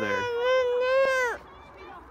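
A baby lets out one long, high-pitched wail lasting about a second and a half that cuts off suddenly.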